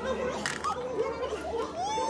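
Indistinct children's voices chattering in the background, with one child's voice rising into a long held call near the end.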